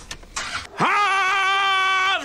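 A loud, high-pitched cry that sweeps up and is held steady for over a second, then dips and wavers into a shorter second note.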